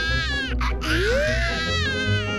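Baby-like wailing cries, the pitch bending up and down, with one sharp rising wail about a second in, over background music.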